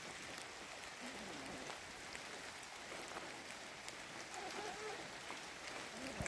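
Light rain falling on leaves and wet ground, a steady faint hiss with scattered drop ticks.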